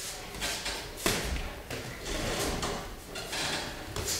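Boxing sparring: gloved punches thudding and feet shuffling on the ring canvas, with a sharp impact about a second in and several softer hits after.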